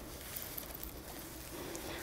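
Faint rustling of a fabric blouse being pulled onto a child's arms, over low room noise.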